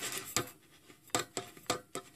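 Half a dozen light, sharp clicks and taps spread over two seconds, small handling sounds around the opened aneroid barometer movement.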